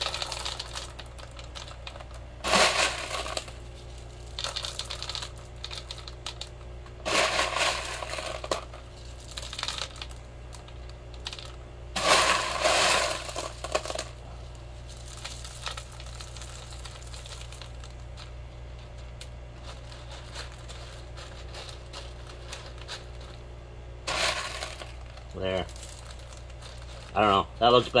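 Expanded clay pebbles scooped by hand from a plastic bowl and dropped into the net pot of a deep water culture bucket, clattering in several short separate bursts over a steady low hum.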